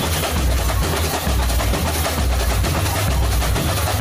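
Outdoor street-parade ambience: a steady noisy wash over a heavy, uneven low rumble, with no clear tune or voice standing out.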